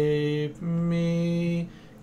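A man singing solfège syllables unaccompanied: the end of a held 're', then a held 'mi' of about a second. Together they close the upper-voice line mi-fa-re-mi, a stepwise voice-leading pattern over the chords.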